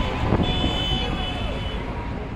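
Highway traffic passing below with a steady roar, a horn sounding from about half a second in for over a second, and crowd voices calling out.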